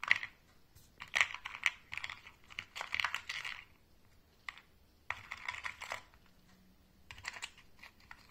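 Small rotary-tool accessories (sanding bands and drums on mandrels) clicking and rattling against the compartments of a clear plastic storage box as they are picked up and handled, in several short bursts with brief pauses between.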